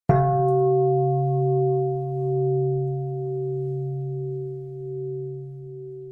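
A meditation bowl bell struck once, ringing out in a few steady tones that slowly fade with a gentle wavering pulse.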